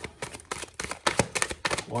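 Tarot cards being shuffled by hand: a quick, uneven run of card clicks and slaps.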